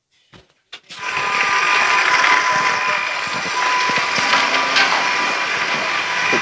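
A small electric motor running steadily with a whining whirr. It starts abruptly about a second in, after near silence.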